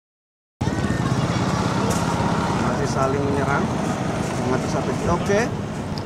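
Outdoor ambience that cuts in abruptly about half a second in: a steady low rumble of road traffic and engines, with people's voices calling out in the background.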